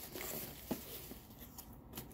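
Faint handling of a cardboard box of CDs: a soft rustle near the start and a single small click a little later, then very quiet.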